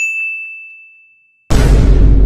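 A single bright ding, a high bell-like chime that rings and fades away over about a second and a half, used as a comedic sound effect. Near the end, loud music with heavy bass cuts in suddenly.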